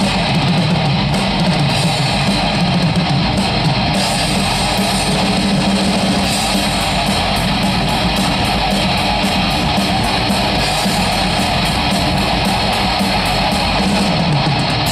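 A melodic death metal band playing live in an instrumental passage, with distorted electric guitars, bass guitar and drum kit. A fast, even beat on the cymbals comes in about four seconds in.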